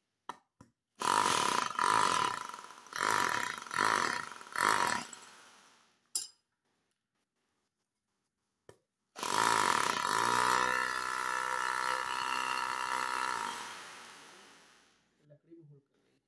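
Freshly repaired electric hammer drill test-run: four or five short trigger bursts, then one longer run of about five seconds that spins up and winds down near the end. It runs properly, showing the repair has worked.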